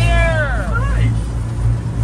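Amphibious duck boat's engine running with a steady low drone as the vehicle moves through the water. A long, drawn-out shouted word from a man's voice rings over it for about the first second.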